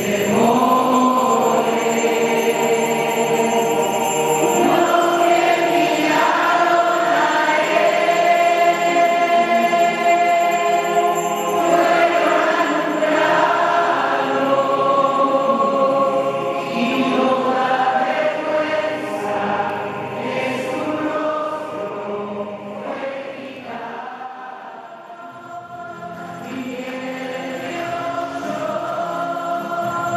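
A choir singing a sacred hymn, with sustained, held notes; it grows softer for a few seconds near the end and then swells again.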